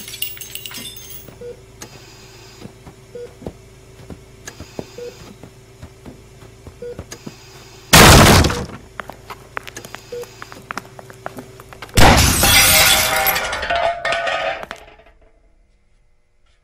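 Horror audio-drama sound effects over a low steady drone with faint ticks every second or two: a sudden short crash about eight seconds in, then a longer crash with breaking and clattering about twelve seconds in that dies away.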